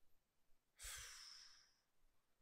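A man's single breath into a close microphone, about a second long, starting just under a second in and fading out, with a faint low bump at its start.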